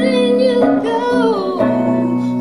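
Live female lead vocal holding a wavering, wordless sung note over guitar accompaniment, then sliding down in pitch and dropping out about a second and a half in, leaving the guitar playing.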